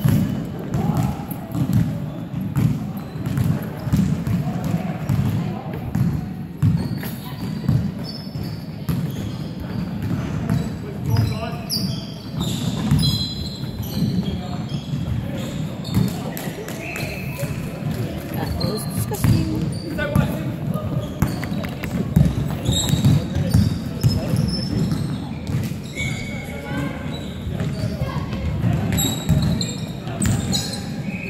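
Basketball game in a large indoor hall: the ball bouncing on the hardwood court, with players' and onlookers' voices echoing around it.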